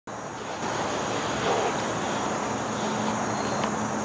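Steady outdoor background noise, an even hiss and rumble with no distinct events, with a faint low hum joining about halfway through.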